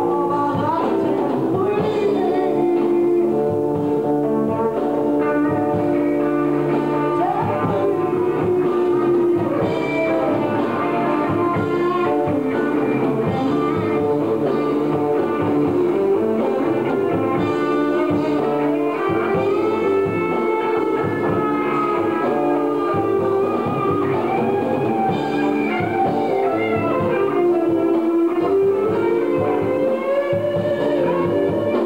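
Live rock band playing, with electric guitar prominent over bass guitar and keyboard.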